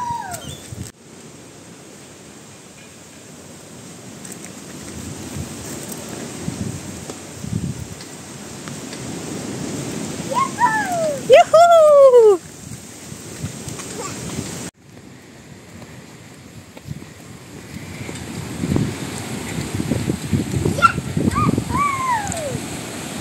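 Wind buffeting the phone's microphone outdoors, a loud, uneven rumble that swells and fades and cuts off abruptly twice. About halfway through comes a cluster of loud high calls, each falling in pitch, and a few more falling calls come near the end.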